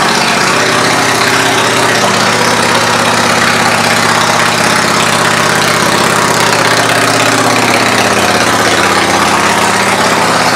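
2006 Yamaha V Star 650 Classic's air-cooled V-twin idling steadily through aftermarket exhaust pipes.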